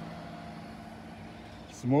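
Steady low engine hum, like a vehicle idling, fading out a little over a second in.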